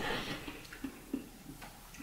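Faint eating sounds: a few soft, short clicks of someone chewing a mouthful of soup.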